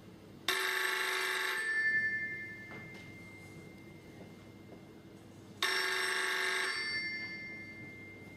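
A bell telephone ringing twice, about five seconds apart. Each ring is about a second long, starts sharply and leaves a fading bell tone after it.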